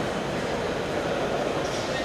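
Steady, reverberant background noise of a large indoor sports hall, with indistinct distant voices.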